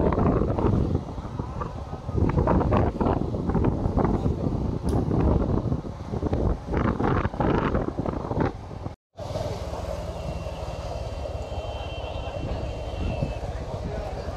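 Road and wind noise from riding along a street on a moving vehicle, uneven and buffeting for most of the first nine seconds. It cuts out briefly about nine seconds in, then turns steadier and quieter.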